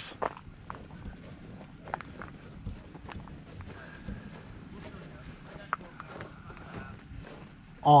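Footsteps on snow-patched dirt ground, an irregular scatter of light crunches and knocks as a person walks slowly, with a faint steady outdoor background haze.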